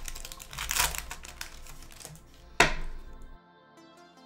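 Foil trading-card booster pack being torn open by hand: rapid crackling and crinkling of the wrapper, with one sharp rip about two and a half seconds in. The handling stops shortly after, leaving soft background music.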